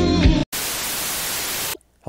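The tail of the intro music stops dead. After a moment's gap, a burst of hissing static runs for just over a second and cuts off abruptly.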